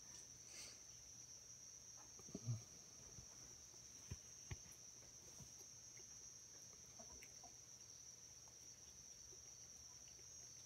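Near silence with a faint, steady, high-pitched insect chorus. There is a brief faint low sound about two and a half seconds in, and two faint clicks a little later.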